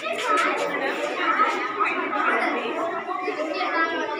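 Schoolchildren chattering, many voices talking over one another with no single clear speaker.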